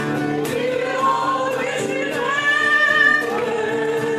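A group of mostly women's voices singing a song together, one voice leading on a microphone, with hand clapping along.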